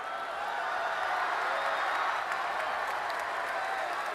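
Arena crowd applauding, a steady wash of clapping with voices mixed in, swelling a little about a second in.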